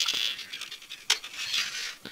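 Plastic model-kit parts handled in the hands, scraping and rubbing against each other, with a single sharp click about a second in.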